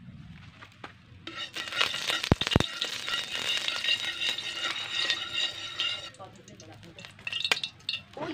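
Food sizzling in hot oil in a steel wok on a wood-fired cement stove, with a metal utensil stirring and scraping in the pan. The sizzle starts suddenly about a second in and dies down about six seconds in, with two sharp knocks about two and a half seconds in.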